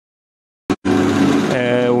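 Homemade peanut-shelling machine running with a steady low hum. The sound drops out to dead silence for most of the first second, with one short click, then the hum returns; a man's voice begins near the end.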